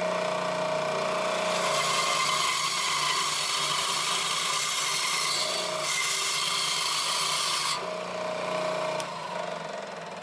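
Delta bandsaw running with a steady motor hum. About two seconds in the blade bites into a wooden board, adding a loud rasping hiss that stops abruptly near eight seconds as the cut finishes. The saw then runs on freely, quieter still after about nine seconds.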